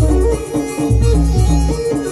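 Adivasi timli dance music played live on an electronic arranger keyboard: a melody that steps from note to note over heavy bass notes repeated about twice a second.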